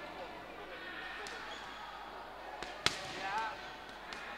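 Sharp slaps of boxing gloves landing during an exchange of punches: a few scattered hits, the loudest nearly three seconds in, over background voices. A voice calls out just after the loudest hit.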